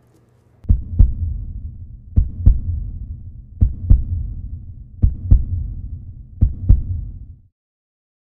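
Heartbeat sound effect: five double thumps (lub-dub), one pair about every 1.4 s over a low throb, stopping abruptly near the end.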